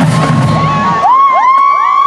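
A marching band plays low held notes that stop about a second in. Then several high voices whoop and cheer in long, overlapping 'woo's that rise and fall in pitch.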